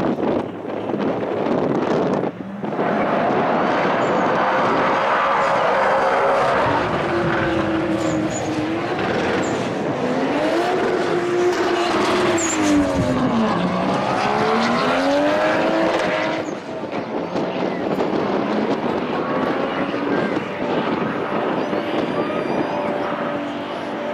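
A Toyota Supra and a Ford Mustang launching off the drag-strip line about two and a half seconds in. Their engines rev hard up through the gears, the pitch climbing and then dropping at each shift, and stay loud as the cars run down the track.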